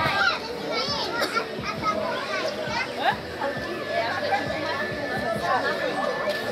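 Children's voices chattering and calling out as they play, with people talking around them. A thin, steady high tone joins about halfway through.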